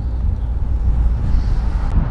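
Steady low rumble of road and engine noise heard from inside the cabin of a moving car.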